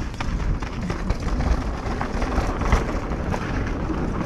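Mountain bike descending a dirt trail: wind rumble on the mic, with the tyres rolling over the dirt and the bike rattling and clicking over bumps.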